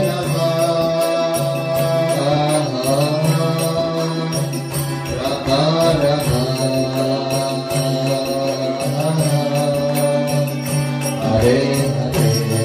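Kirtan: a harmonium holding sustained chords and a two-headed mridanga drum beating in rhythm, under voices singing a devotional chant.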